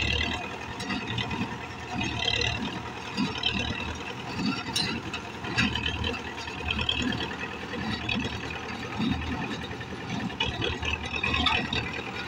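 Belarus MTZ-82 tractor's four-cylinder diesel running steadily under load while it drives a small square baler. The baler thuds and clatters in a regular rhythm about once a second as it packs the hay.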